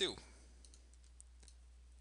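Faint computer keyboard and mouse clicks, a few scattered taps, as a number is typed into a form box and a button clicked. Right at the start comes one brief, louder sound that falls steeply in pitch.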